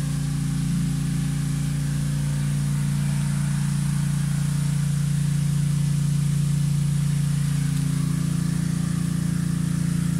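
A machine running with a steady low hum that holds one pitch throughout.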